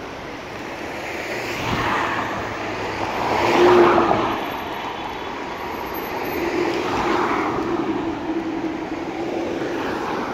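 Road traffic on a busy city street: several cars drive past one after another, each swelling and fading, the loudest about four seconds in.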